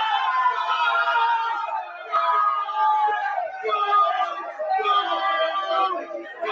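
Several men screaming and yelling in celebration of a football goal, in long held cries that break for breath and start again every second or two.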